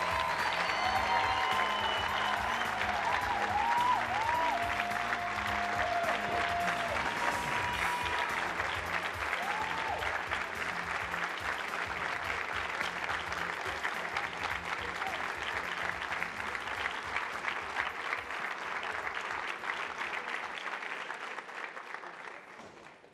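Audience applauding steadily for a long stretch, with music playing underneath; the clapping slowly dies away near the end.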